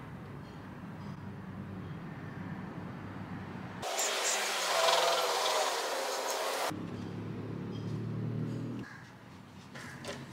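Liquid poured from a sachet into an engine's oil filler: a steady splashing hiss that starts suddenly about four seconds in and stops about three seconds later, over a faint low hum.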